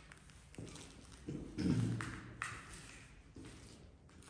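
Scattered footsteps and light knocks on a debris-strewn concrete floor as someone walks away, with a louder, lower scuff about a second and a half in, growing fainter toward the end.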